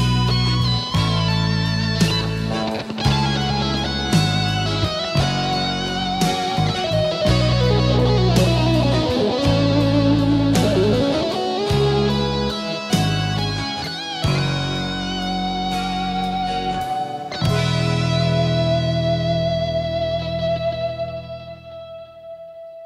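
Instrumental ending of a rock song: a lead electric guitar plays over bass and drums. Near the end the band holds a final chord that fades out.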